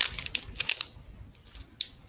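Thin plastic record sleeve crinkling in the hands as a vinyl LP inside it is handled: a quick run of crackles in the first second, then a couple of single crackles near the end.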